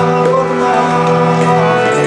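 A man singing a devotional Hindu bhajan over his own harmonium: steady held reed chords under a wavering vocal line, the chord shifting near the end.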